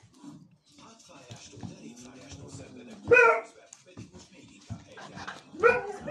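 A small black-and-tan puppy barking twice: two short barks about two and a half seconds apart.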